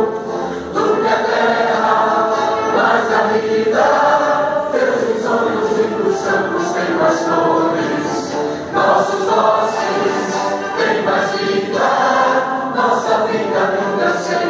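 A choir of many voices singing an anthem, with long held notes that change every second or so.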